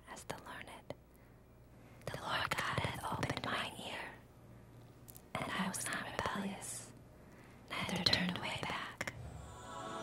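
A person whispering in three short phrases with pauses between them.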